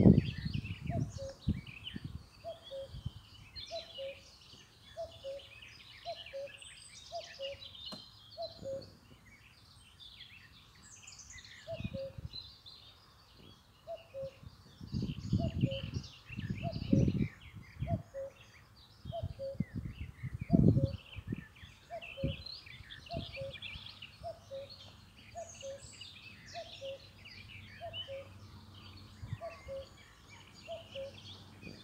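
Mobility scooter's electronic warning beeper sounding a soft two-note beep that repeats steadily about once a second as the scooter drives, with a few low thumps from rolling over bumps.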